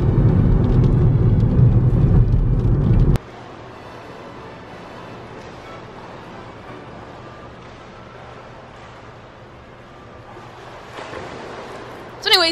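Car cabin noise while driving, a loud low rumble of road and engine, that cuts off suddenly about three seconds in. A much quieter steady room hum of an indoor pool hall follows.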